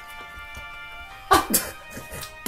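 Background music, with a man's short, loud burst of laughter in two quick gusts about a second and a half in.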